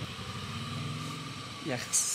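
A motor vehicle engine idling steadily close by, dying away about a second and a half in.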